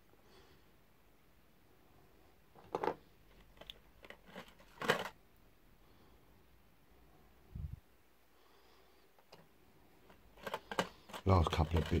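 A few sharp clicks and taps of small miniature figures being handled over a clear plastic box, the loudest about five seconds in, with a dull low thump a little later.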